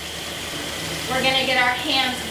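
Water running steadily from a sink faucet into the basin, an even hiss; a woman starts talking about halfway through.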